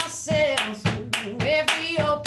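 Woman singing with hand claps keeping a steady beat, about two claps a second.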